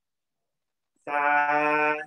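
A man's voice holding one steady vowel for about a second, starting about a second in and cut off sharply at the end.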